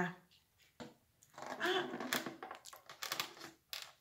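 Handling of a cardboard biscuit box and a table knife: a few light clicks and rustles, with a brief low murmur of voice partway through.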